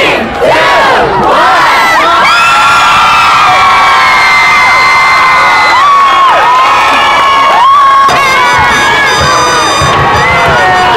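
A crowd of high school students cheering and screaming loudly, many voices overlapping. Short shouts come first, then long, held high-pitched yells for several seconds.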